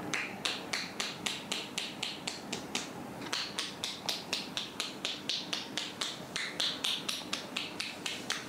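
Massage therapist's hands tapping rhythmically on a person's head: a run of sharp, crisp pats, about four a second, with no break.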